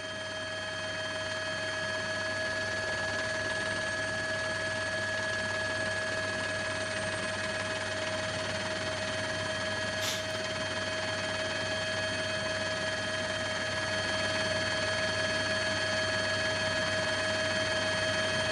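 Steady mechanical drone of a helicopter's turbine and rotor, with constant whining tones over an even rushing noise, picked up on the broadcast's live sound. A brief click about ten seconds in.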